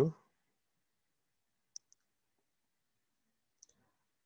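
Faint, short clicks from the pointing device used to draw on the shared screen: a pair about two seconds in and one more near the end, with near silence between them.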